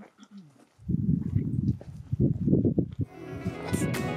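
Gusty wind buffeting the microphone as a low, uneven rumble for about two seconds. Background music with bass notes then comes in about three seconds in.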